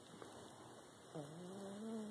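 Small dog asleep, letting out one long, low whining moan about a second in; its pitch dips and then slowly rises.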